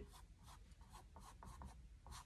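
Faint, quick strokes of a paintbrush laying acrylic paint onto stretched canvas: several short scratchy dabs as small overlapping feather scoops are painted.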